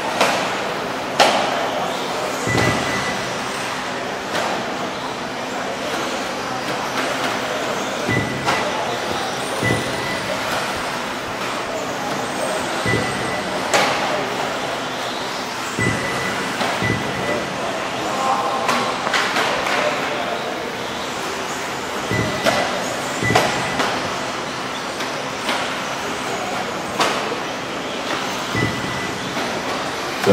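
Electric 4WD RC off-road cars racing on an indoor dirt track: a steady whir of motors and tyres broken by frequent sharp clacks as the cars land and hit the pipe borders. Short high beeps recur every few seconds.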